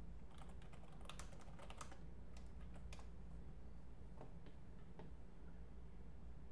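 Typing on a computer keyboard: a quick run of keystrokes over the first three seconds, then a few scattered clicks, with a faint steady low hum behind.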